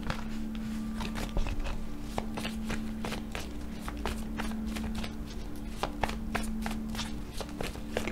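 Tarot cards being shuffled by hand, a run of quick, irregular flicks and taps of card on card, over a steady low drone.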